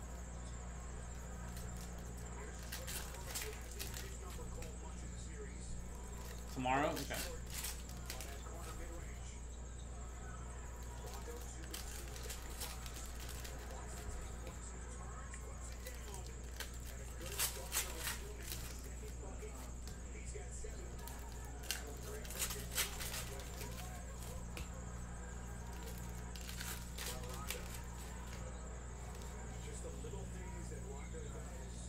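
Trading cards and foil card packs being handled on a table: soft rustles and light clicks as card stacks are squared and packs are moved, with a few sharper clicks a little past halfway, over a steady low hum.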